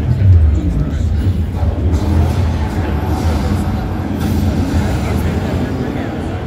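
Loud, bass-heavy soundtrack of a video-wall show played over large speakers: deep low vibrations with music, loudest just after the start, over the chatter of a crowd.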